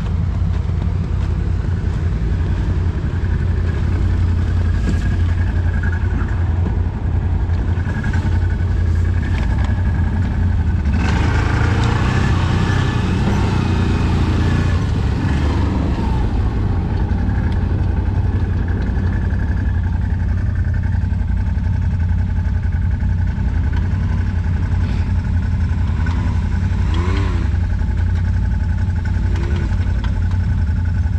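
ATV engine running steadily beneath the rider as a continuous low drone. It grows louder and noisier for a few seconds from about eleven seconds in, and gives a short rising-and-falling rev near the end.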